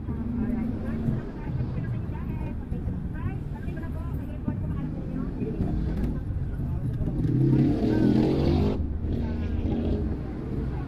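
A car driving in town traffic, its engine and road noise a steady low rumble heard from inside the cabin. A voice talks over it, loudest near the end.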